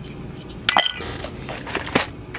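Small needle packets and cases being handled in a cardboard box: a sharp click with a brief ringing clink about two-thirds of a second in, and another click near the end.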